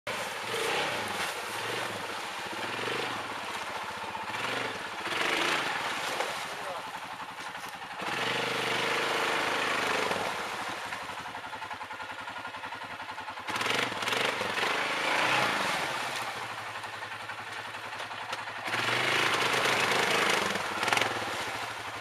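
Quad bike (ATV) engine working under load as it drives through a shallow creek, the revs rising and falling with several louder surges, over the noise of churned water.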